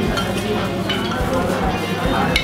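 Background chatter of diners in a restaurant dining room, with a few light clinks of tableware.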